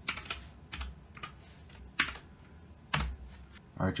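Computer keyboard typing: a few irregular keystrokes, the two loudest about two and three seconds in.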